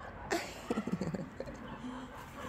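A woman laughing briefly, a quick run of short breathy laughs.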